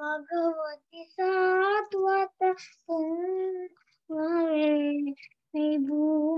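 A child singing a devotional prayer chant, one voice in phrases of long held notes with short breaks for breath.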